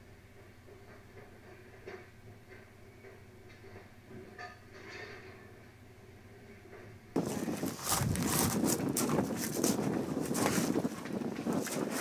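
Faint crackling and peeling of an old, cracked vinyl decal being pulled off RV siding by a gloved hand. About seven seconds in, the sound jumps abruptly to a much louder, rough rustling noise.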